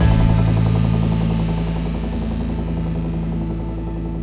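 A rock band's music: the last drum and cymbal hits in the first half second, then a low held chord that rings on and slowly fades.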